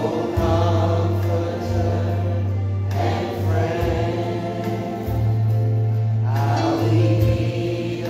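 Choir singing a gospel worship song over a deep, held bass line, in phrases of a few seconds each.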